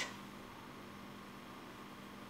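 Faint room tone: a steady low hiss with a faint hum underneath, and no distinct sound.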